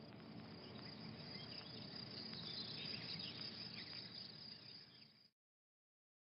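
Faint swamp ambience: a steady high insect drone over a low rumble, with a few short chirps in the middle. It cuts off suddenly near the end.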